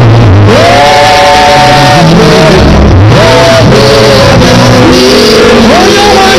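Loud live worship music: a voice singing long held notes that slide into pitch over a changing bass line.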